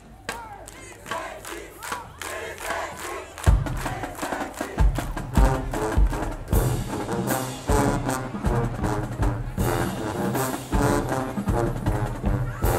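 Marching band members chanting and shouting in unison. About three and a half seconds in, heavy drum beats come in and set a steady rhythm under the chant.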